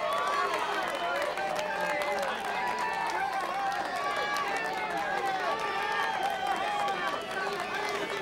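Crowd of onlookers calling and shouting over one another, many voices overlapping, with scattered clapping.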